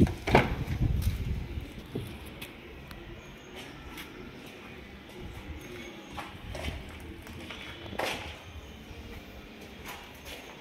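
A car door being opened and handled: a thump with a low rumble at the start, a few light clicks, and a sharper knock about eight seconds in.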